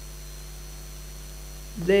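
Steady electrical mains hum with a faint hiss under a pause in speech, picked up through the briefing's microphone feed. A voice starts just before the end.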